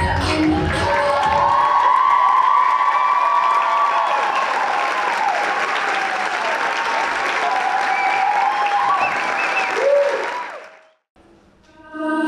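Audience applause with cheering as a song ends in the first second. The applause fades out about ten and a half seconds in, a brief hush follows, and the next song starts at the very end.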